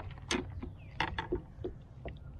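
About six irregular clicks and light knocks over two seconds: handling noise as a freshly landed bass and fishing gear are handled in a plastic kayak.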